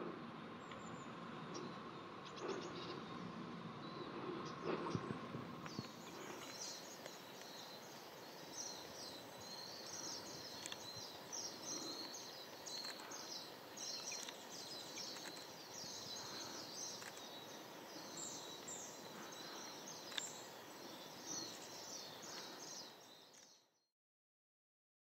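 Outdoor ambience with birds chirping in the background: a dense, continuous run of short high chirps starting about six seconds in. The sound cuts off just before the end.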